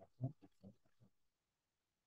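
A man's voice making a few short, low vocal sounds in quick succession, all within about the first second.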